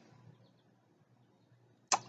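A near-quiet pause in a man's talk: only faint background hiss, with his voice starting again just before the end.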